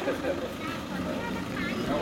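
Several people talking quietly among themselves over a low, steady background rumble, with a man's voice starting to speak near the end.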